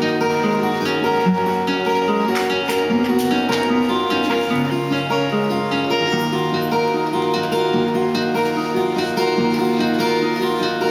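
Acoustic guitars playing an instrumental passage, a steady run of plucked and strummed notes with no singing.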